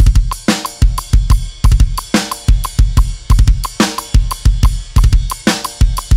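Acoustic drum kit playing a heavy metal beat in 5/4 at 180 BPM: bass drum and snare under a cymbal struck on every beat, with a big cymbal wash opening each five-beat bar, about every 1.7 seconds.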